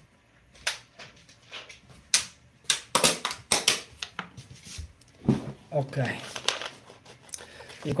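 Handling noise as someone sits back down at a desk: a run of sharp clicks and crinkles from a plastic water bottle being handled, thickest in the middle, then some low murmured voice sounds toward the end.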